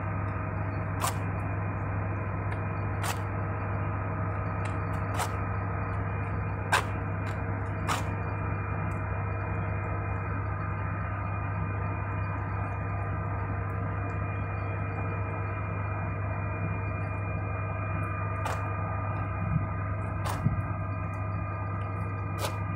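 A steady hum with several faint constant tones above it, broken every few seconds by short sharp clicks.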